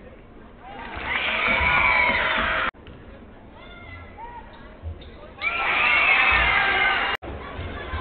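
Home crowd in a basketball arena cheering in two loud bursts as free throws go in, each cheer cut off abruptly by an edit. Lower crowd chatter fills the gap between them.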